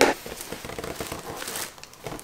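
A cardboard subscription box being opened: a sharp sound at the very start, then tissue paper packing crinkling and rustling unevenly.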